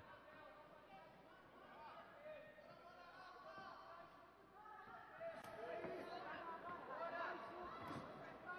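Faint kickboxing arena sound: distant voices shouting and chattering, with a few soft thumps from the fighters' footwork and strikes on the ring canvas, one of them near the end as a kick is thrown.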